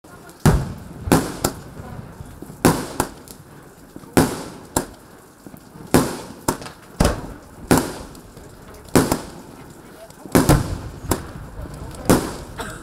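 A 600-shot roman candle battery firing: a string of sharp pops at uneven spacing, about one to two a second, each launching a star and trailing off briefly in echo.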